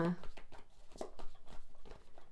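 A deck of oracle cards shuffled by hand, the cards slapping together in a quick, irregular run of soft clicks.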